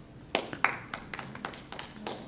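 A few people clapping briefly and unevenly; the claps are strongest in the first second, then thin out into weaker scattered ones.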